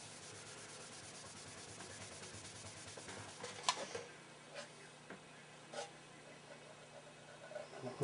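Faint rubbing of a polishing cloth on a painted plastic radio cabinet, then a few soft clicks as the cabinet is handled, over a low steady hum.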